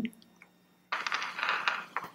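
A short rustling clatter of quick fine clicks, starting about a second in and lasting about a second and a half, over a faint steady low hum.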